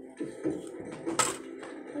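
Quiet stretch of a television programme's soundtrack, with a few small clicks and one sharp click a little past a second in.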